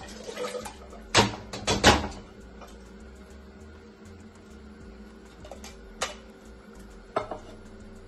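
Metal cookware knocking three times in quick succession against the rim of a cooking pot as beans are tipped in, followed later by a few lighter clinks.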